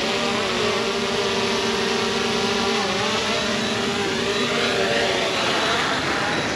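DJI Mini 3 Pro drone's propellers and motors buzzing close by as it hovers low to land, a steady pitched whine that dips slightly about halfway through.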